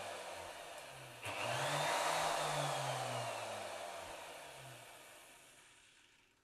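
Bosch GOF 1600 (MRC23EVS) router motor switched on through a homemade external switch: it starts abruptly about a second in with a rising whine, then coasts down and fades out near the end. A fainter earlier run is already winding down before it starts.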